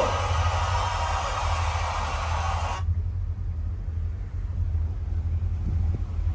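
Crowd noise from a concert video playing on a phone stops abruptly about three seconds in. A steady low rumble runs underneath throughout.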